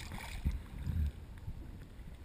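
Water sloshing and lapping against a GoPro's waterproof housing at the surface, with dull low thumps about half a second and a second in.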